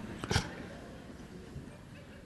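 A man's soft, breathy chuckle, two short puffs of laughing breath in the first half second, then quiet room tone.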